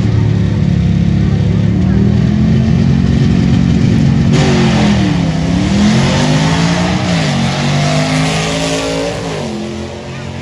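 A drag car's engine runs loud and steady at the starting line. About four seconds in it launches and accelerates down the strip, its pitch dropping and climbing again at each gear shift. It fades toward the end.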